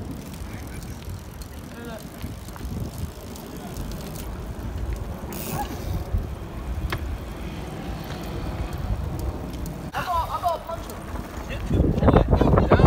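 Bicycles rolling along a street: a steady low rumble of tyres and wind on the microphone, with a few light clicks and faint voices briefly about ten seconds in.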